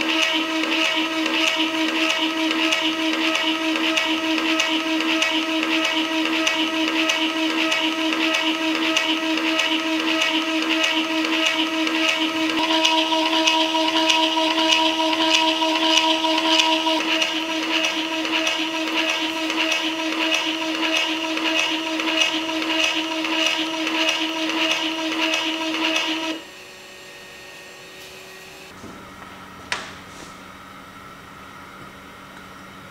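Motor-driven peristaltic pump running, its three bearing rollers squeezing a silicone tube: a steady, high-pitched motor whine that stops abruptly near the end, followed by a faint click.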